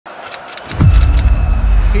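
Edited-in deep bass drop: a low boom falling in pitch about three-quarters of a second in, settling into a loud sustained low rumble, with a few sharp clicks above it.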